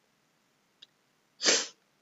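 A faint click, then about a second and a half in a single short, loud breathy burst from a person close to the microphone.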